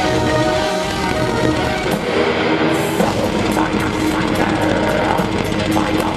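A symphonic black metal band playing live through a festival PA: distorted guitars and sustained keyboard lines over drums. The deepest bass drops out briefly about two seconds in, then rapid drumming comes back in about a second later.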